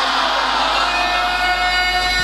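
Many voices in an audience chanting together over a sound system, holding long drawn-out notes.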